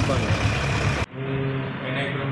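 Road traffic noise, vehicle engines running close by, for about the first second. It cuts off abruptly to a man's voice against a quiet room background.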